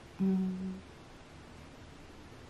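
A woman's short closed-mouth hum: one steady note lasting about half a second, just after the start.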